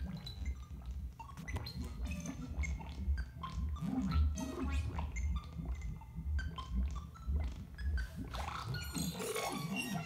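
Modular synth patch playing through a Mutable Instruments Clouds texture synthesizer. A low bass pulses irregularly under a stream of short blips and chirps that jump and slide in pitch at random, driven by a sample-and-hold on the oscillator pitch and on Clouds' position.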